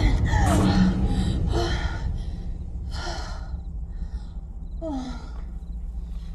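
A young woman breathing heavily in fear: four audible breaths, about one every second and a half, over a low steady rumble.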